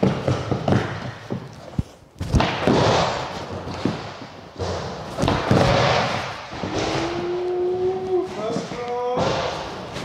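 Skateboard wheels rolling over a plywood skatepark floor, with several sharp pops and thuds of the board as kickflip-to-primo tricks are tried.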